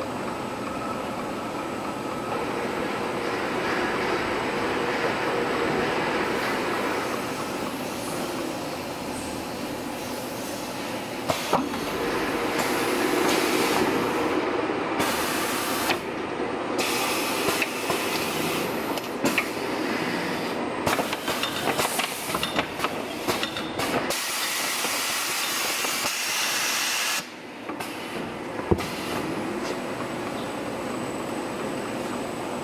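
Lung Meng converting machine running multilayer material over its rollers: a steady mechanical running noise with hissing. From about 11 seconds in, scattered sharp clicks come through, and the level dips briefly near the end.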